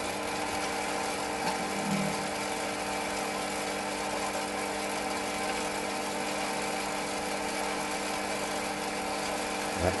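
Metal lathe running steadily at a slowed spindle speed while a 5.5 mm drill bit drills out the bore of a small stepper-motor pulley, giving a steady machine hum.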